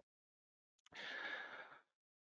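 A man breathing out in a single soft sigh of about a second, near the middle, close on a headset microphone.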